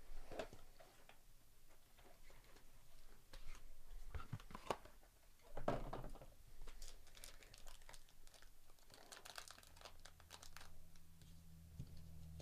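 Gloved hands handling a 2023 Topps Inception hobby box and its foil-wrapped card pack. A few scrapes and taps come first, then a stretch of crinkling foil wrapper in the second half.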